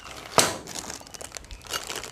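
Plastic packaging crinkling as it is handled, with a sharp rustle about half a second in and smaller crackles after it.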